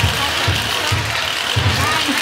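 Low, muffled drumbeats at a slow, slightly uneven pace, about one every half second or more, over a faint murmur of voices.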